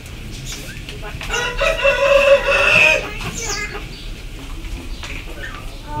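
A rooster crowing once, one long call starting about a second and a half in and lasting about a second and a half.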